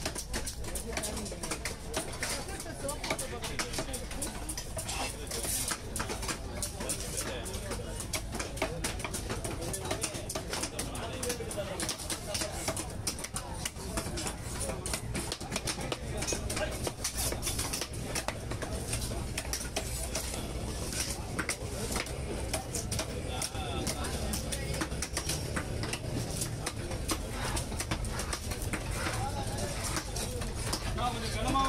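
Large knife chopping a black pomfret into steaks on a wooden log block: a run of irregular sharp knocks of the blade striking the wood, with voices in the background.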